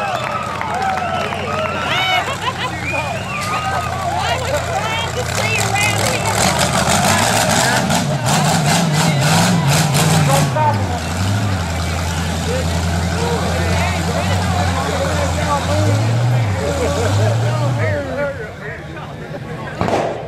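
Off-road rock buggy's engine idling and revving in bursts as it crawls over boulders, the revs rising and falling twice, with a spell of rapid clattering in the middle. Spectators shout and cheer throughout, and the engine sound stops near the end.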